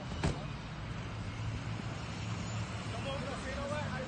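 A vehicle engine running low and steady under outdoor background noise, with one sharp click shortly after the start and a faint distant voice near the end.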